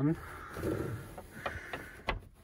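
Small plastic emergency light unit being pushed into place on a car dashboard against the windscreen: a soft scrape, then several light clicks and taps.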